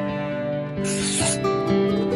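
Acoustic guitar background music, with a short scratchy rubbing sound effect of a marker drawing a circle, lasting about half a second, about a second in.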